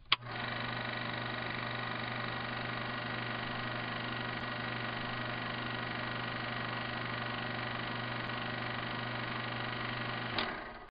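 A click, then a steady electrical hum and hiss made of several fixed tones that does not change at all.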